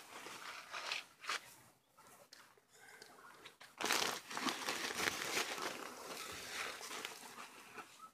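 A woven plastic feed sack rustling and crinkling as it is handled, then a longer stretch of rustling and scraping from about four seconds in as a plastic dipper scoops dry rice bran out of the sack.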